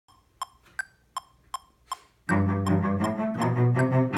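A metronome ticks evenly, about two and a half ticks a second. A little over two seconds in, a cello comes in over it with a quick run of short, bounced spiccato bow strokes in an etude.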